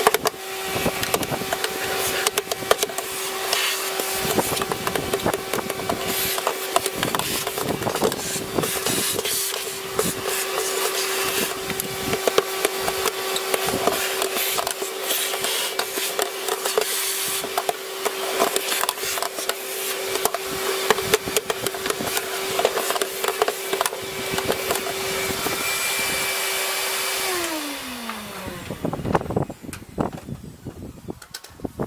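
Vacuum cleaner running with a steady hum and rushing suction while a stiff paintbrush scrubs dirt loose inside a plastic air filter box, with many small scratches and clicks of grit going into the nozzle. Near the end the vacuum is switched off and its hum falls in pitch as the motor winds down.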